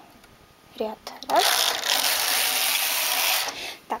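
Domestic knitting machine carriage pushed once across the needle bed, knitting a row: a steady sliding and rattling rush that lasts about two seconds and stops abruptly.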